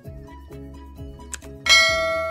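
Background music with a steady beat, then near the end one loud bell-like ding that is struck once and rings on.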